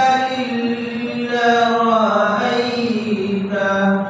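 A man reciting the Quran in the melodic chanted style of tilawat. He draws out one long phrase with held notes that sink lower in pitch toward its close, and the phrase ends near the end.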